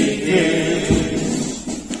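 A choir of mostly men's voices chanting an Orthodox hymn together while walking in procession, the sung phrase fading away near the end.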